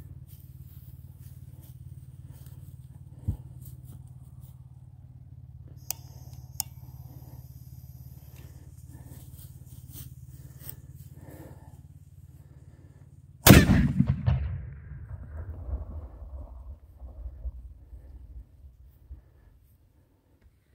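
Fuse of a steel 1/3-scale M1841 6-pounder black powder cannon burning down with faint crackles and a brief hiss. About two-thirds of the way through, the cannon fires its 1.5-ounce powder charge and golf ball in a single loud report that rumbles away over several seconds.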